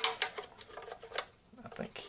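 Plastic clicking and rubbing as a squirrel-cage blower fan and its plastic mounting bracket are turned and pressed together by hand. A few sharp clicks come at the start, followed by quieter, scattered handling noises.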